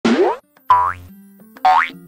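Three cartoon boing sound effects, each a short sweep rising in pitch, coming in quick succession, over light background music with low held notes.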